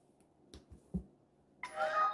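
A few faint clicks as a USB cable plug is pushed into a smartphone's charging port, then near the end a short electronic chime of a few steady tones from the phone as it begins charging.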